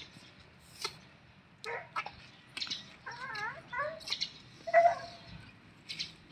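Newborn elephant calf suckling at its mother's teat: scattered short clicks, a wavering squeaky call about halfway through, and a brief louder squeak near the end.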